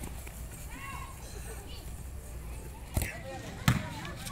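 Faint indistinct voices, then two sharp slaps of a volleyball being hit, about three seconds in and again just before the end.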